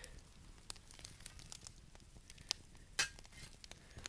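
Faint crackling of wood-fire coals, with a few sharp clicks and clinks as a long-handled shovel shifts them into a bed; the loudest click comes about three seconds in.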